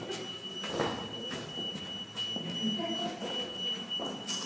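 Low, indistinct murmur of visitors in a stone chapel, with a few faint knocks, and a thin steady high whine running through it.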